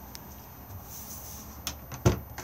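Quiet room tone with a faint click shortly after the start and a sharper click about a second and a half in.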